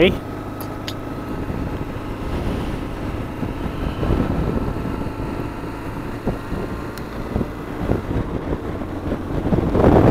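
BMW R1200GSA's boxer-twin engine running steadily at road speed, with wind rushing over the helmet-mounted microphone.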